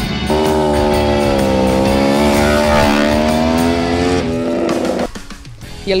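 Sport motorcycle engine running at high revs in a steady, sustained note for about four seconds, then cutting off suddenly, over background music.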